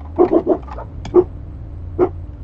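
A dog barking in a quick run of short, sharp yaps, bunched in the first second or so, with one more near the end.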